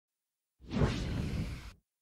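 A single whoosh sound effect, about a second long, starting about half a second in: a low, rushing noise that cuts off sharply.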